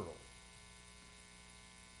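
Steady electrical mains hum with a faint buzz, after the end of a man's word at the very start.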